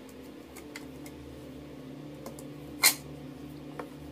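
Glass pane being pressed into a picture frame by hand: a few light taps and clicks of glass against frame, with one sharp click about three seconds in, over a steady low hum.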